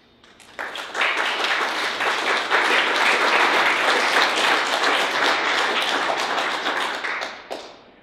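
Audience applauding: the clapping starts about half a second in, swells within a second, holds steady and dies away near the end.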